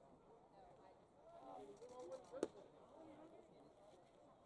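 A single sharp pop about two and a half seconds in, a pitched baseball smacking into the catcher's leather mitt, over faint crowd chatter.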